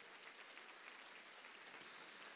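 Faint, steady applause from a large congregation.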